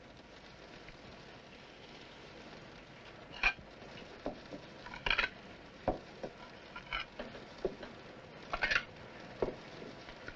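China cups, saucers and plates set down on a cloth-covered table: a scatter of light knocks and clinks, irregularly spaced, that begins about three seconds in, over a faint steady hiss.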